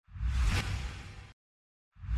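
News-bulletin transition sound effect: a whoosh over a deep boom that swells, peaks about half a second in and cuts off abruptly after a little over a second. The same whoosh starts again at the very end.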